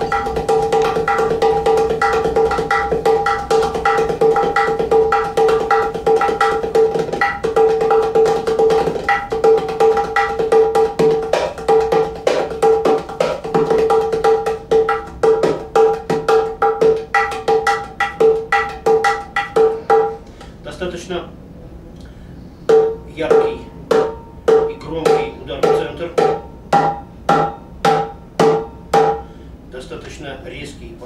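Hands on Drums Cajudoo, a thin-walled ceramic udu pot with a thin plywood bottom, played with the hands like a darbuka: fast rolling finger strokes with a ringing pitched tone from the clay body. About two-thirds through it stops for a couple of seconds, then goes on with slower, evenly spaced strokes.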